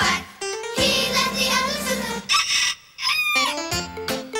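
Children's TV song music with a long, wavering, crow-like call, like a rooster's cock-a-doodle-doo, from about a second in. A short falling glide follows near the end, and a bouncy band tune starts just before the end.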